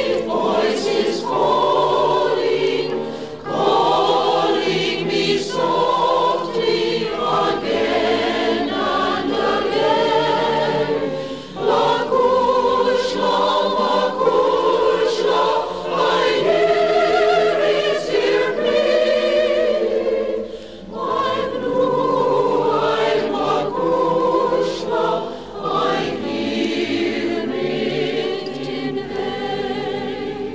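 A choir singing an Irish song in harmony, in long sustained phrases with brief breaks between them.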